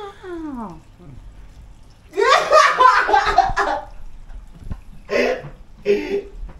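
Water pouring from a stainless steel kettle into a pot of cut potatoes, with voices and laughter over it.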